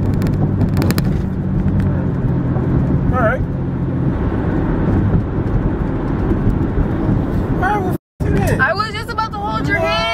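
Steady low road and engine rumble inside a moving car's cabin, with a steady engine hum in the first few seconds. About eight seconds in, the sound drops out completely for a moment, and then voices come in.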